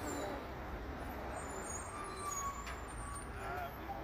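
Outdoor background noise: a steady low rumble, with faint, indistinct voices from people talking quietly nearby.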